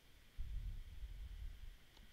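Quiet room tone: a faint steady hiss, with a low rumble coming in about half a second in.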